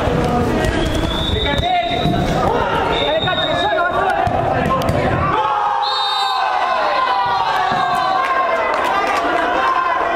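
Players and spectators shouting and calling during an indoor five-a-side football game, with scattered knocks of the ball being kicked and bounced on the artificial turf.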